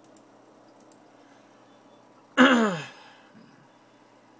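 A man's short, voiced sigh about two and a half seconds in, loud and sudden, falling in pitch over about half a second.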